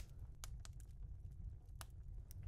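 Quiet room tone: a steady low hum with a few faint clicks, one plainer near the end.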